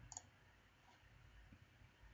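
Near silence with one faint computer mouse click a moment in, the click on the 'Generate Bitstream' command.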